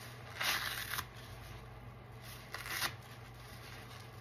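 Soapy, foam-soaked kitchen sponges squeezed by gloved hands in a tub of suds: two short, wet, hissing squelches, the first about half a second in and the second near three seconds.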